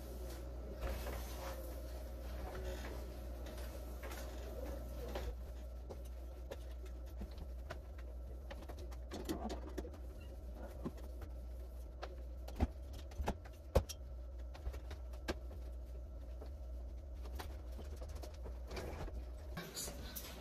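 Quiet sound of a cloth wiping a stainless-steel fridge, with a few light knocks about two-thirds of the way through, over a steady low hum.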